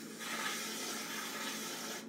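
Metal rib held against a spinning wet clay cylinder on a potter's wheel, making a steady wet scraping sound as it cleans up the clay.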